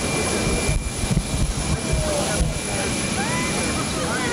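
Steady jet aircraft engine noise on an airfield, with a few irregular low thumps in the first half.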